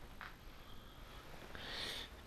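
Quiet room with faint breathing from the man holding the camera, a light tick about a quarter second in, and a breath drawn in near the end.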